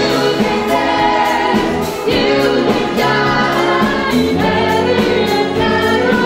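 A big band playing live, with several vocalists singing together into microphones over brass, saxophones, guitars, keyboard and drums, to a steady beat.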